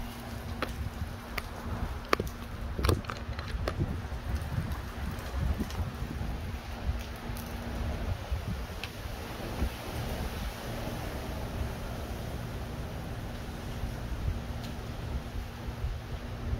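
Wind rumbling on a phone microphone, with scattered clicks and knocks as the phone is handled and fixed to a mount. A faint steady hum sits underneath and drops out for a few seconds in the middle.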